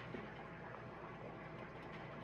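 Faint, steady hum and hiss of a fish room's air-driven aquarium filtration, with no distinct clicks or knocks.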